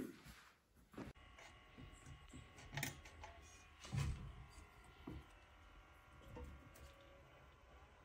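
Quiet handling noise with a few soft knocks, the loudest about four seconds in, as a glass vase holding a plant is handled on a round metal tier of a plant stand, over faint room tone.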